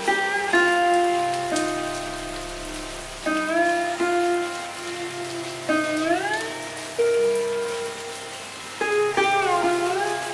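Sitar playing slow plucked notes, several of them bent upward in pitch, over a steady low drone, with the steady hiss of rain underneath.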